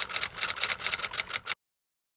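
Typewriter key-clicking sound effect, a rapid run of clicks that cuts off suddenly about one and a half seconds in.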